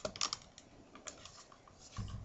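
Round reed spokes being pulled up snug through a woven reed basket's rim: faint light clicks and rustles of reed against reed, most of them in the first half-second.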